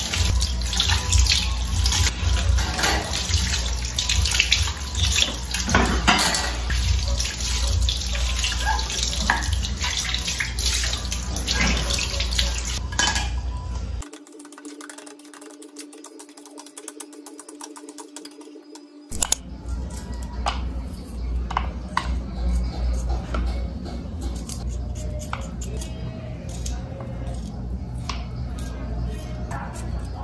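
Kitchen tap running into a sink while dishes and utensils are rinsed, with clinks and knocks of dishware against the sink. About halfway through the sound drops for a few seconds, then the rinsing and clatter carry on.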